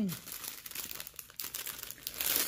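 Clear plastic bag of diamond painting drills crinkling as it is handled and opened, a run of soft, irregular crackles.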